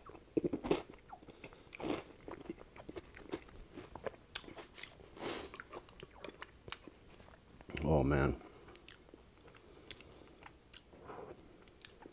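Close-miked chewing of spoonfuls of chili with croutons in it: wet mouth sounds and crunching bites, with scattered clicks of the spoon. A short hum from the eater comes about eight seconds in.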